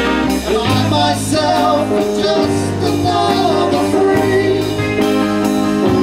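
Live band playing: electric and acoustic guitars, electric bass, keyboard and drum kit, with a sung lead vocal over it.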